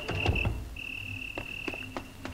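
A cricket-like insect chirring in long, steady high trills that break off and start again. Scattered sharp clicks are heard, and a dull low thump comes just after the start.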